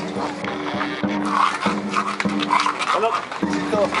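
Outdoor street procession din: music with long held low notes, mixed voices and calls, and many sharp clicks that fit horses' hooves on pavement.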